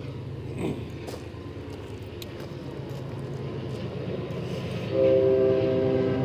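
A steady low hum, then about five seconds in a loud horn starts sounding a held chord of several steady tones.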